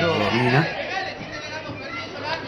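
Male commentator speaking over general arena crowd chatter; the voice is loudest in the first second.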